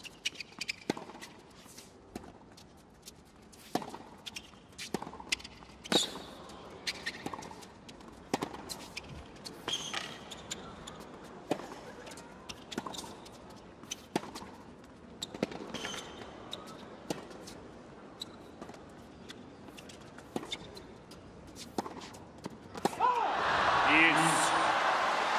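A long tennis rally on a hard court: racquets strike the ball in a steady back-and-forth, one sharp hit about every second or so, under a faint arena hum. Near the end the crowd noise rises sharply as the point finishes.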